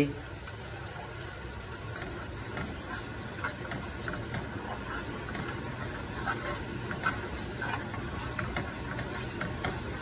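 Red wine jus simmering in a frying pan, with small bubbling pops and a spoon stirring through it. The sauce is reducing and almost ready.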